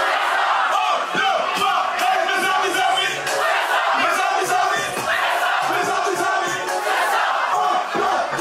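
Large outdoor concert crowd shouting together in loud, massed voices, with the backing beat mostly dropped out.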